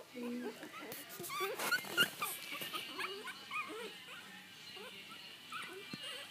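A litter of four-week-old Chihuahua puppies whimpering and squeaking: many short, high-pitched squeals overlapping, busiest in the first half and thinning toward the end.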